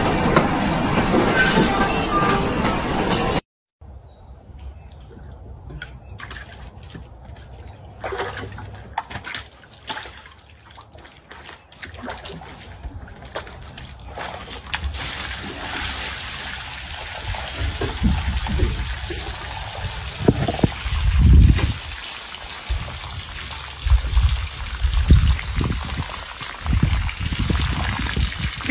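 Water trickling and sloshing in a clear plastic storage tub as a large dog sits in it, water spilling over the edge onto the grass, with irregular low thumps toward the end.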